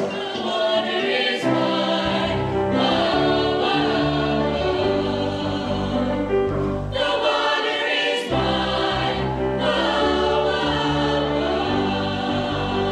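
Mixed high school choir singing in several parts, holding long chords together, with a new phrase starting about a second and a half in.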